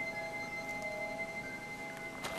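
Quiet background music: a few long held notes ringing steadily.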